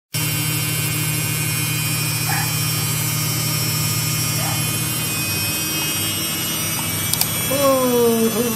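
Samsung front-loading washing machine running, with a steady low hum and a thin high whine. The machine is vibrating, which the owner puts down to an unlevel floor. A short pitched, voice-like sound comes in near the end.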